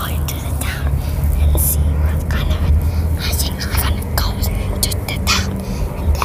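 Whispering, with short hissy bursts scattered through, over the steady low rumble of a moving car's cabin.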